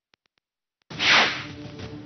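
A gap of dead silence, then about a second in a sharp whoosh transition sound effect, trailing into a steady low music bed.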